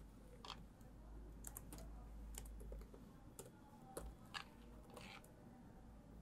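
Faint, scattered keystrokes on a laptop keyboard, irregular clicks as code is typed, over a low steady hum.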